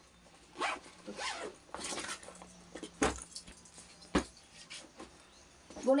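Fabric bag being handled, opened out and lifted: irregular rustling, with two sharp knocks about three and four seconds in.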